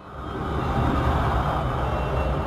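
A low, steady rumble with hiss, fading in from silence over the first half second.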